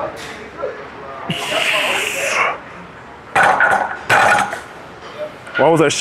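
A lifter straining through a heavy incline barbell bench press: a long forceful hissing exhale about a second and a half in, then strained grunting breaths a couple of seconds later, with metal clinks of the loaded bar and plates against the rack.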